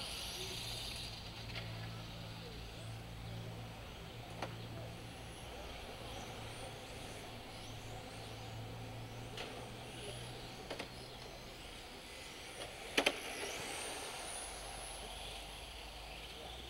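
Electric 1/10-scale RC touring cars racing at a distance, their motors giving faint high whines that rise and fall in pitch as they accelerate and brake around the track. A few sharp clicks, and one louder sharp knock late on.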